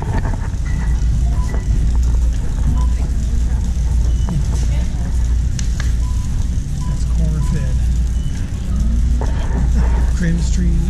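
Shopping cart wheels rolling across a smooth store floor: a steady low rumble, with a few short, faint beeps and distant voices in the background.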